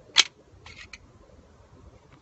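A sharp metallic click from a 1911 pistol as a magazine is handled at the grip, followed by a few lighter clicks about half a second later.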